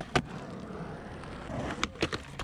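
Skateboard wheels rolling over a concrete skatepark surface, with a sharp clack just after the start and another near the end as the board is popped up onto the concrete ledge.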